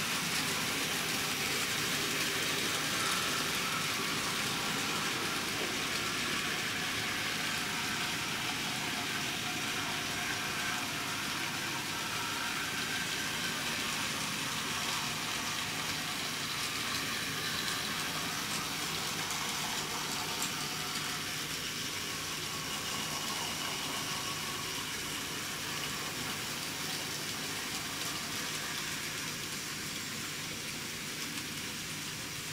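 N-scale model trains running: a steady whir of small motors and wheels rolling on the track, growing slightly quieter toward the end.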